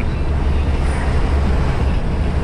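Steady in-cab noise of an Iveco EuroStar truck cruising at highway speed: a low engine drone under road and tyre noise.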